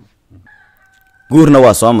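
A faint, short steady-pitched tone in the background, under a second long, starting about half a second in.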